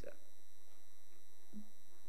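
A pause in speech that leaves a steady electrical hum with faint, steady high-pitched whine tones from a microphone and sound system.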